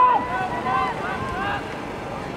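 Loud shouted calls across a football pitch: one strong shout at the start, then several shorter calls during the first second and a half, over a steady hiss of wind on the microphone and distant crowd.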